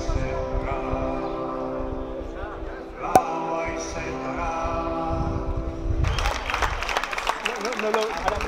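A group of people singing together, holding long steady notes in chords, with one sharp click about three seconds in. About six seconds in, the singing gives way to noisy crowd hubbub.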